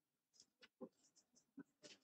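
Near silence broken by faint, scattered short clicks and rustles of papers being handled during the signing of a document.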